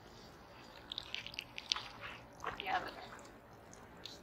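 Faint crunching scuffs, clustered about a second in, from shoes shifting on wet gravel as someone crouches down.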